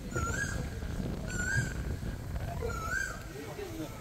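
An animal's short whining call, rising then falling in pitch, repeated three times at about a second and a half apart over steady outdoor background noise.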